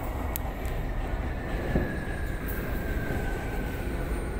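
Toei Mita Line 6500 series train heard from inside its rear cab, rumbling as it brakes to a stop at a platform, with a faint high tone slowly falling in pitch as it slows and a sharp click shortly after the start.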